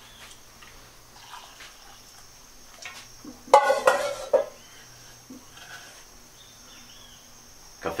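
Faint clinks and knocks of kitchenware as a metal coffee kettle and a mug are handled for coffee, with a short spell of voice a little past halfway and a steady high-pitched tone underneath.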